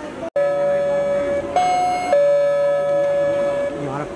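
Recorded music cutting in over the stage sound system: one long steady held note that steps up a little about a second and a half in, drops back half a second later, and fades near the end.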